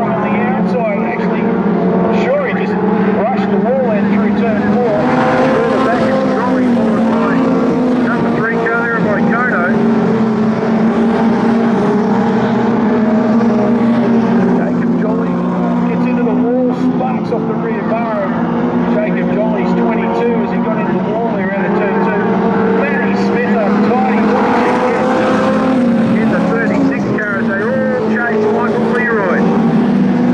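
Junior sedan race cars running together on a dirt speedway oval, their engines held at high revs in a steady drone, the pitch dropping and rising again every few seconds as they go through the turns.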